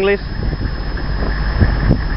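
Steady low rumble of idling military vehicle engines from a halted convoy.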